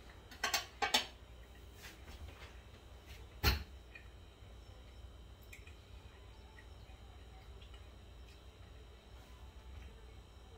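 Cutlery clinking on a plate: two light clinks about half a second and a second in, then one sharper clink in the middle as the fork is laid down on the plate. The rest is quiet room tone.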